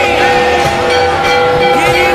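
Temple aarti music during the lamp offering: several steady held tones sound throughout, with higher wavering, bending tones over them.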